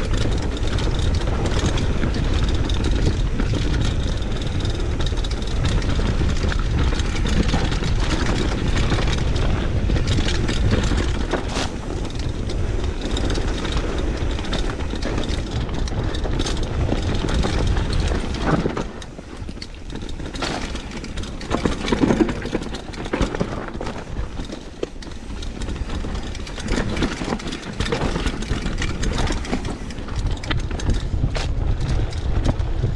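A mountain bike running down a dirt singletrack: wind buffeting the camera microphone, tyres on dirt and the bike rattling over bumps. The noise eases for a few seconds about two-thirds of the way through, then rough knocks return.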